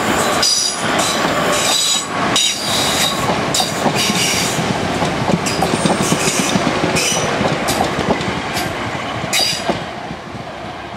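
Class 465 Networker electric multiple unit running past close by, its wheels squealing in short high bursts on the curved track over a steady rumble, with sharp clicks from the rail joints. The sound falls away near the end as the rear of the train passes.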